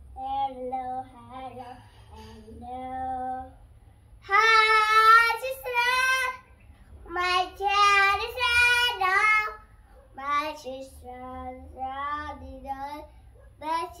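A young girl singing unaccompanied, in short phrases with wavering held notes; in the middle she sings two loud, high phrases before dropping back to quieter singing.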